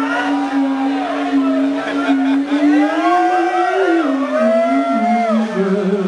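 Electric guitar holding a long sustained note through a loud amp, with wavering bends and gliding feedback overtones above it. The note steps down a few times toward the end, with no drums under it.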